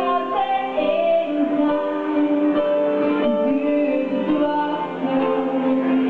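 A woman singing live into a microphone over keyboard-played backing music, holding long notes.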